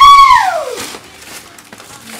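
A single high-pitched vocal note that swells, bends up and then falls away, fading out within the first second.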